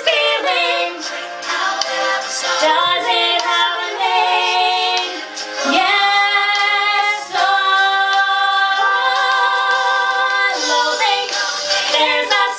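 Two women singing a duet, their voices together in harmony, with long held notes through the middle of the passage, one line rising partway through.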